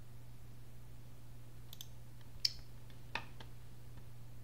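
Computer mouse clicking, a few short sharp clicks in the second half, the loudest about two and a half seconds in, while a PowerPoint slide is selected in the thumbnail pane. A faint steady low hum runs underneath.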